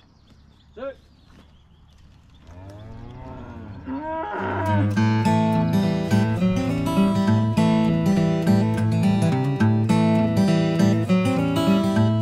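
Cattle mooing a few times. Then, about four seconds in, strummed acoustic guitar music comes in and stays loud, covering everything else.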